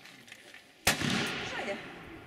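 A single black-powder revolver shot about a second in, sharp and loud, with a long fading echo behind it.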